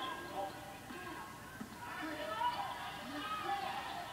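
A college basketball broadcast playing on a television, heard through the TV's speaker: indistinct voices, with no clear words.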